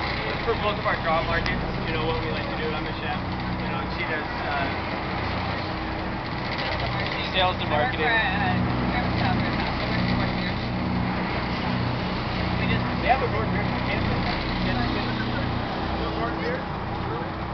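Car barge's engines running with a steady low drone under a haze of wind and water noise, with indistinct voices now and then.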